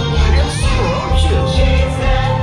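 Upbeat Christmas parade music with singing over a steady bass beat, played over a passing float's loudspeakers.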